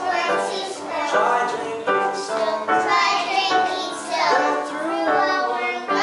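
A group of kindergarten children singing a song together, holding notes and moving from note to note in a steady tune.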